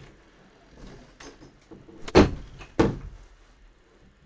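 Two loud knocks or thuds about half a second apart in the middle, with a few fainter knocks before them, from someone moving things out of sight.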